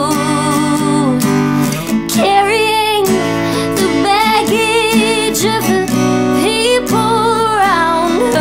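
A woman singing, with vibrato on long held notes, over her own strummed acoustic guitar.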